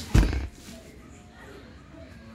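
A toddler's hand hitting a large cardboard shipping box: one loud, short thump near the start.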